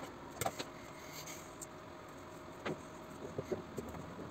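Faint handling sounds as electrical tape is wrapped around a small LiPo battery pack and scissors are handled on a wooden desk: a few light clicks and taps, with a small cluster near the end, over a faint steady hum.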